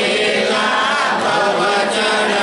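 Many voices chanting together in a group, a congregation singing continuously at an even volume.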